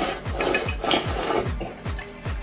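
Eating noises: slurping, with chopsticks scraping food out of a ceramic bowl tipped up to the mouth, in short bursts that stop shortly before the end. Under it is background music with a steady beat of about four thumps a second.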